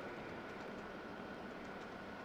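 Steady room tone: a low hum and even hiss with a faint, steady high whine, and a few faint ticks.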